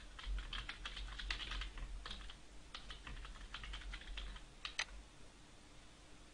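Computer keyboard typing: a quick, uneven run of keystrokes lasting about five seconds, ending with a louder pair of strokes near the end.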